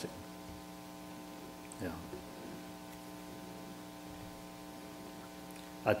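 Steady electrical mains hum made of several fixed tones, with one short spoken word about two seconds in.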